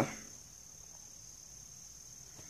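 Quiet pause filled with faint background noise and a thin, steady high-pitched whine.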